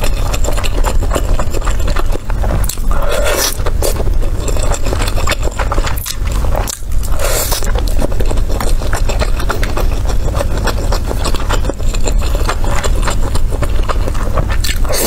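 Close-miked chewing of skewered fish balls in chili-oil broth: dense, continuous wet clicks and smacks with a few louder bites.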